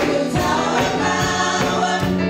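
Gospel praise team of five singers in harmony, with keyboard and drums on a steady beat.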